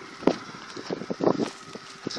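Wind buffeting the microphone in gusts, with a sharp thump about a quarter second in and a louder patch just past a second, over the faint steady whine of a distant electric RC model plane's motor.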